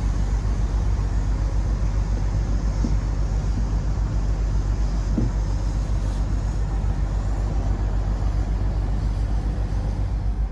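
A motor yacht's engine running steadily underway, heard on board as a low, even drone with a fast pulse in it.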